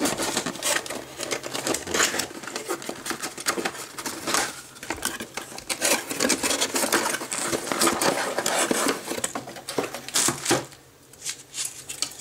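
Cardboard packaging being handled and pulled apart as a CPU tower cooler is lifted out of its box: a busy run of rustling, scraping and small knocks, easing off briefly near the end.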